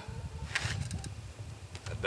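Low, steady rumble of wind on the microphone outdoors, with a short rustling burst about half a second in.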